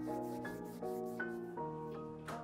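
Instrumental rap beat intro: a melody of short ringing notes, a few a second, with no voice over it.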